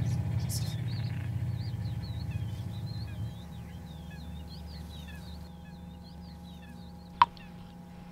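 Birds chirping in quick, high twittering calls over a low drone that fades out about three seconds in. Near the end, a single sharp water drip falls into a sink.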